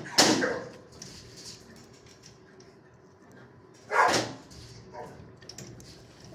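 A dog barking: two single sharp barks, one at the very start and one about four seconds later.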